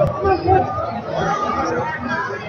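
Indistinct chatter of several people talking, with one sharp click right at the start.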